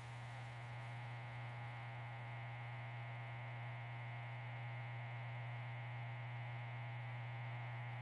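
A steady low hum with a faint hiss, unchanging throughout, with no other sounds.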